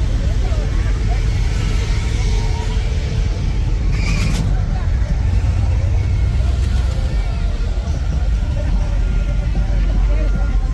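Lowrider cars idling and rolling past in slow cruise traffic, a steady deep engine and road rumble, with voices of people on the sidewalk. A short hiss comes about four seconds in.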